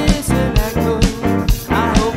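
Blues-rock band playing a song: a voice singing over drums, bass and guitar, with a drum hit about every half second.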